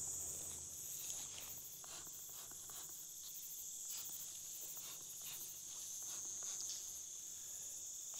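Crickets chirping in a steady, high-pitched chorus, with a few faint scattered clicks and rustles.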